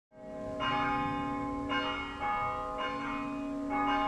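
Church bells ringing: four strikes about a second apart, each on a different pitch and left to ring on into the next.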